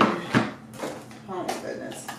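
Papers and small boxes being handled inside a wooden cabinet: one sharp knock about a third of a second in and a softer one at the start, with a woman murmuring briefly in between.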